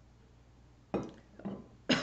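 A woman coughing and clearing her throat after a sip of water: a first short cough about a second in, then two more, the last the loudest near the end.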